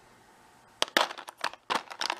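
Plastic lip gloss tubes clicking and clattering against one another in a plastic drawer as a hand rummages through them and pulls one out. It is a quick run of sharp clicks starting about a second in.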